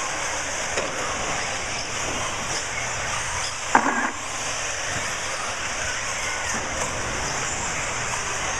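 Eighth-scale RC off-road buggies racing on an indoor dirt track: a steady, high-pitched whir of the cars' motors, with one brief, sharp, loud sound a little before four seconds in.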